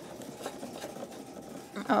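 Husqvarna Viking Opal 650 sewing machine's mechanism running quietly as the needle bar is raised, with a light click about half a second in.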